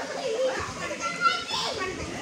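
Young children's voices and chatter, with one child's high-pitched cry rising over them about a second and a half in.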